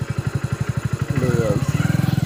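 Hero Splendor motorcycle's single-cylinder four-stroke engine running at low speed, an even putter of about a dozen firing pulses a second that grows slightly louder a little over a second in.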